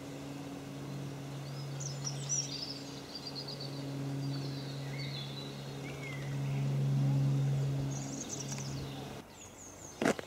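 A steady, low engine drone swells to its loudest about seven seconds in, then stops abruptly near the end. Small birds chirp and twitter at intervals over it.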